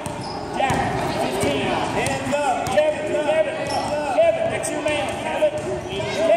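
A basketball being dribbled on a hardwood gym floor, with short sneaker squeaks and voices in the background.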